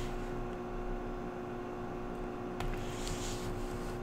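A steady low electrical hum with faint handling noise: a soft click about two and a half seconds in and a brief rustle just after, as the coin album is shifted in gloved hands.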